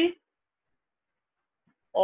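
A man's voice finishing a word, then near silence for about a second and a half, then his speech picks up again at the end.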